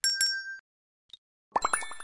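Animated subscribe-button sound effects: a bright chime rings out right at the start and fades within about half a second. A faint blip follows about a second in. At about a second and a half comes a quick run of short notes, around a dozen a second, over a high shimmering ring.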